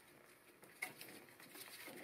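Near silence, broken by one faint short click a little under a second in, then faint hiss.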